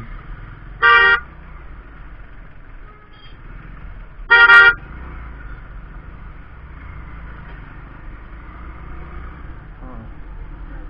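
A vehicle horn beeping twice, a short beep about a second in and a slightly longer one about four and a half seconds in, over the steady hum of a moving small motorcycle's engine.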